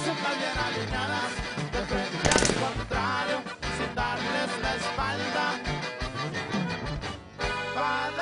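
Regional Mexican corrido music with accordion over bass and drums, a passage with no words. There is one sharp noisy hit about two seconds in.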